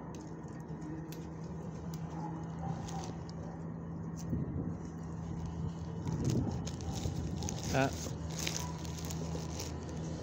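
Dogs sniffing and licking close to the microphone, with small wet clicks, over a steady low hum. A short, high, wavering vocal sound about eight seconds in is the loudest moment.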